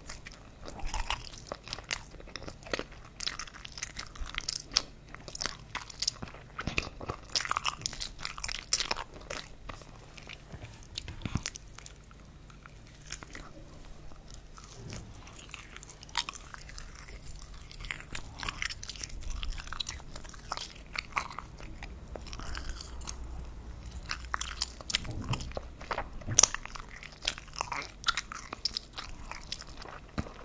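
Close-miked chewing of soft frankfurter sausages (wurstel), with irregular mouth clicks and smacks.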